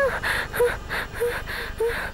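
A woman panting in quick, frightened gasps, about three breaths a second, each with a short voiced catch, as she wakes scared from a nightmare.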